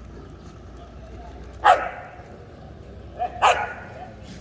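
A dog barks twice, two short barks about a second and a half apart, over steady low background noise.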